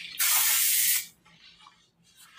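Aerosol can of self-tanner spraying in one hissing burst of just under a second, then stopping.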